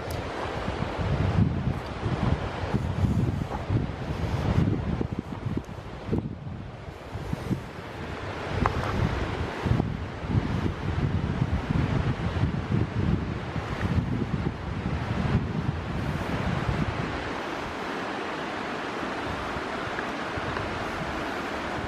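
Wind buffeting the microphone in uneven low gusts, over a steady rushing hiss; the gusts ease off near the end.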